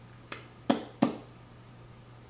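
Lips smacking together three times in quick succession, spreading freshly applied liquid lipstick; short sharp pops within the first second or so, the second and third loudest.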